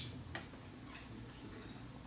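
Faint lecture-hall room tone, a low steady hum and hiss, with one soft click about a third of a second in.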